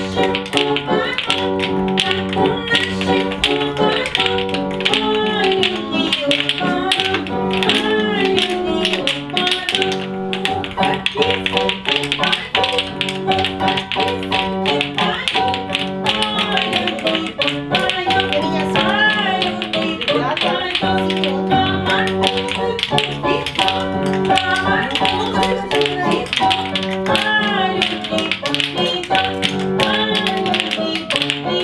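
Russian wooden spoons (lozhki) clacked in rhythm by a group of children, quick sharp clicks over a dance tune.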